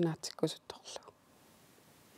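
A woman's speech for about the first second, then a pause with only faint room tone.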